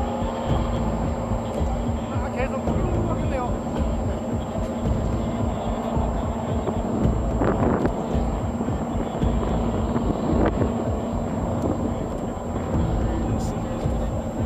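Outdoor rumble on a camcorder microphone, low and uneven, like wind on the mic, with a steady faint hum under it. Onlookers' voices are heard briefly at a few points.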